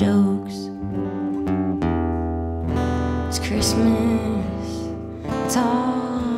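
Acoustic guitar strumming with a pedal steel guitar playing long held notes that bend in pitch, in a live country-folk song.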